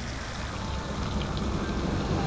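Water sloshing and lapping in a hot spring pool as a man moves through it, growing gradually louder, with a low rumble underneath.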